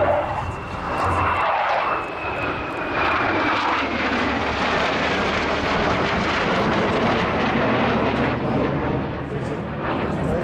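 Two F/A-18 Hornet fighter jets flying past in formation, their jet engine noise holding steady, with a faint high whine that falls slowly in pitch over the first four seconds.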